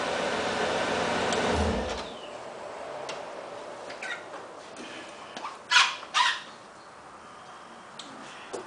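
A Bentley Continental convertible running, with a steady noise that cuts off about two seconds in as it is switched off. Two short, sharp sounds about half a second apart follow a few seconds later.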